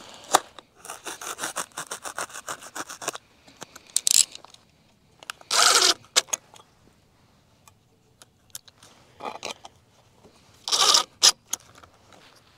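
A razor knife slicing through foam pipe insulation in a quick run of short sawing strokes, followed by several separate scraping rustles as the foam is handled.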